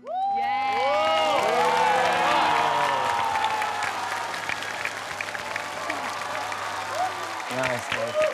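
Audience cheering and applauding at the end of a dance routine. Many cheering voices rise and fall in pitch over the clapping, loudest in the first few seconds, then the applause carries on more evenly.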